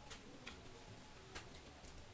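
Faint sounds of people eating biryani by hand from glass plates: about three small sharp clicks over a quiet room.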